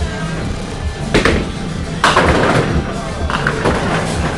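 Background music in a bowling alley, with a sharp knock about a second in and a louder crash about two seconds in followed by about a second of clatter: bowling balls and pins.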